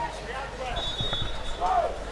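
Open-air football pitch ambience: shouts of players and onlookers from across the field, a brief high whistle tone partway through, and a few dull thuds.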